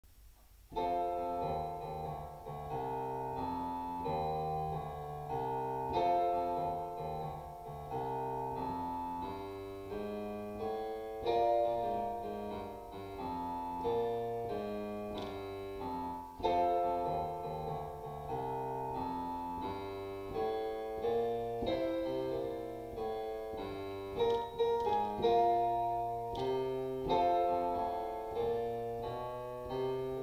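Yamaha digital piano playing a jazz walking bass line in the left hand, with swung quavers, under right-hand chords.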